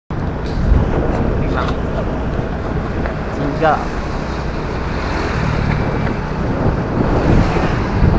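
Wind rushing over the microphone with the low, steady rumble of a motorcycle riding along a road.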